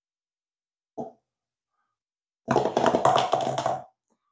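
A rubber-band-powered paper-cup roller toy let go on a wooden floor: a brief tap about a second in, then about a second and a half of rapid rattling and scraping as the unwinding rubber band turns the cup against the floor. It is slipping rather than gripping, since the toy is too light.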